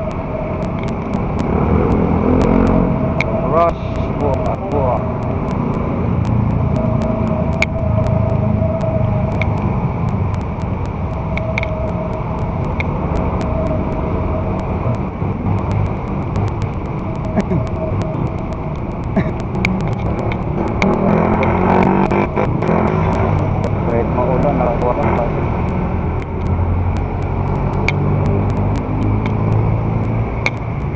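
Street traffic noise and a steady low rumble while moving along a wet city street, with muffled voices in places.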